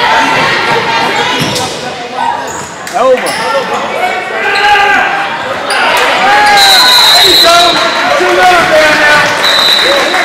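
Sneakers squeaking on a hardwood gym floor during basketball play, with a ball bouncing and players and spectators calling out. A high, steady whistle sounds for about a second and a half past the middle of the clip and again near the end.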